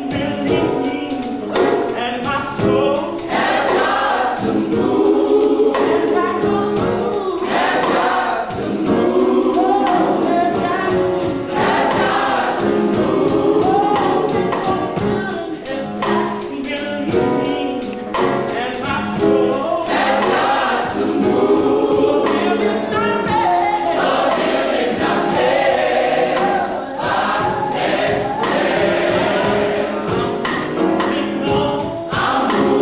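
A university concert choir singing an upbeat gospel song in full voice, backed by piano and drums keeping a steady beat.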